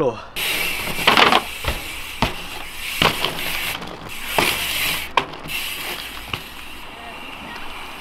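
Dirt jump bike's tyres rolling and scrubbing on tarmac, with several sharp knocks as the wheels land and pivot through a 180 and a half cab on flat ground.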